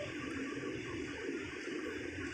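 A pause between chanted recitation: steady, low room hiss, with the last reverberation of the voice dying away at the start.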